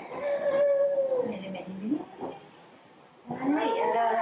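A young baby cooing and babbling in two spells of pitched, gliding vocal sounds, with a short lull before the second spell starts a little over three seconds in.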